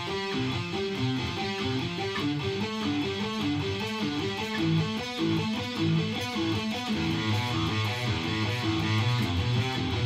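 Electric guitar playing suspended-fourth chord arpeggios, a steady run of single picked notes stepping up and down through the chord shapes.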